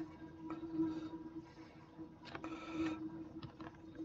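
Several computer keyboard keystrokes clicking sparsely over a steady low hum.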